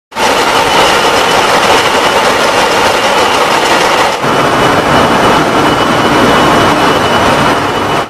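Container ship engine room machinery running: loud, steady, dense mechanical noise with a faint high steady whine, its character shifting slightly about four seconds in.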